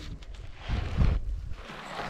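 Two brief rustling, scraping noises close to the microphone, with a low thump about a second in.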